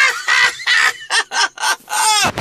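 A man laughing hard in high-pitched squeals: a long falling note at the start, then a rapid run of short bursts.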